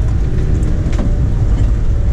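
Citroën C15 under way, heard from inside the cabin: a steady low drone of engine and road noise, with a single click about a second in.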